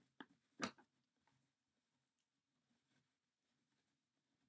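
Near silence, broken in the first second by two short rustles of burlap mesh being pushed through a wire wreath frame, the second louder.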